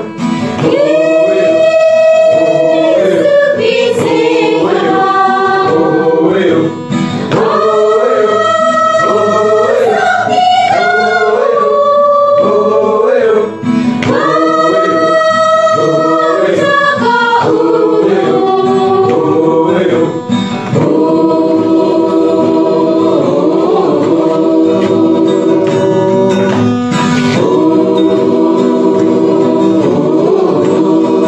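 A Christian gospel song sung by a group of voices with instrumental backing, phrases of long held notes following each other with only brief breaths between them.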